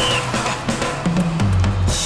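A band launching into a song: drum kit strikes with kick and snare, and a bass line that comes in strongly about one and a half seconds in.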